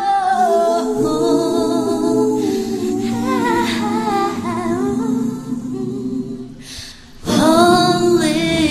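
Male and female pop voices singing together live in close vocal harmony. Near the end the voices drop away briefly, then come back in loudly.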